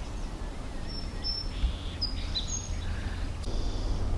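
A few short, high chirps from small birds over a steady low outdoor rumble.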